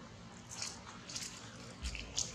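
Dry fallen leaves rustling and crunching in a few short bursts under running feet, with a low thump from wind or handling on the microphone near the end.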